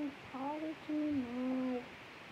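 A young girl humming a tune to herself: a few held notes, the last one the lowest and longest.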